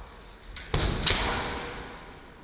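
A thud about two-thirds of a second in, then a sharp crack of bamboo shinai striking, each echoing and fading in the large wooden-floored hall.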